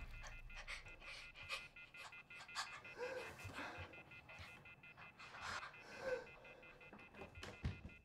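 A man breathing hard and unevenly, quiet and broken into short breaths with a couple of brief voiced catches, over a faint, steady tone from the film's score.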